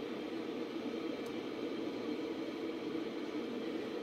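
Dell PowerEdge T420 server running after POST: a steady whir of its cooling fans, with a faint tick about a second in.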